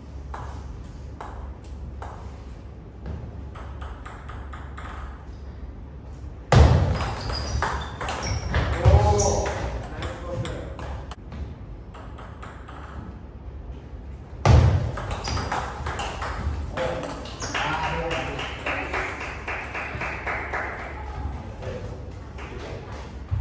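Table tennis ball clicking sharply against the bats and table during play. Two sudden loud bursts come about a third and two thirds of the way in, each followed by several seconds of raised voices shouting among the ball clicks.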